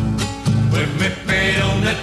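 Group of male voices singing together in close harmony to strummed acoustic guitars: a live performance of a Chilean folk song.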